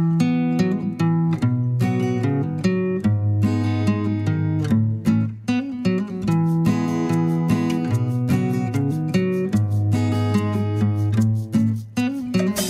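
Background music led by an acoustic guitar, plucked notes and chords at a steady pace over a low bass line.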